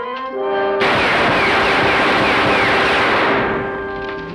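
A volley of pistol shots lasting about two and a half seconds, heard as one dense run of gunfire with repeated falling whines, starting just under a second in. Dramatic orchestral music plays underneath, rising at the start.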